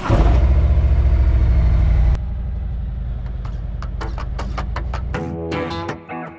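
Harley-Davidson Road King's V-twin engine catching and running, loud for about two seconds and then settling a little quieter. Guitar music comes in about five seconds in and the engine drops away.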